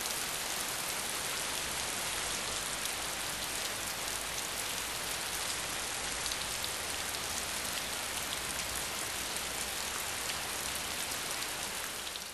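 Steady rain falling, an even hiss with fine drop patter that holds at one level throughout.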